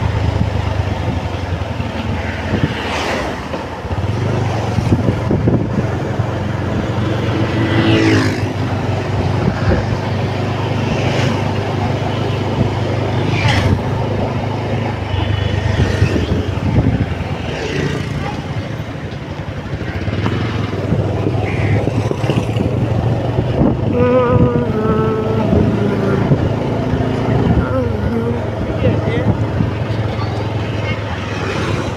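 Steady engine hum and road noise of a moving motor vehicle, heard from on board.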